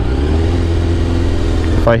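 Sportbike engine running at steady revs, its pitch dipping slightly at first and then holding even.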